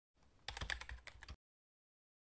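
A short run of rapid clicks and rattles lasting about a second, like typing on a keyboard: a sound effect opening the outro animation.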